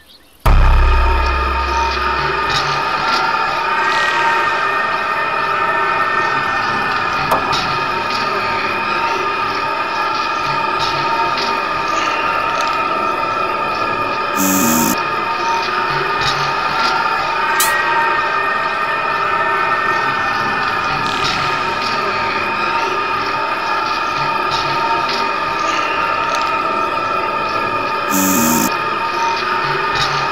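Eerie synthesized horror drone that starts suddenly with a deep thud, then holds a dense cluster of steady high, piercing tones, distorted and electronic. Two brief bursts of high hiss come about halfway through and near the end.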